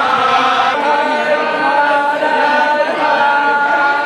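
A group of men chanting in unison, holding long notes and changing pitch together.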